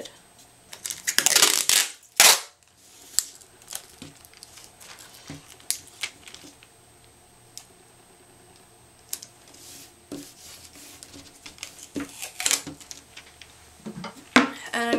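Clear tape pulled off its roll with a short ripping rasp about a second in, then a loud sharp snap. After that come scattered light taps and rustles as the tape and cardstock paint chips are handled on a cutting mat.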